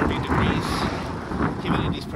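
Wind buffeting the microphone while riding, an uneven low rushing.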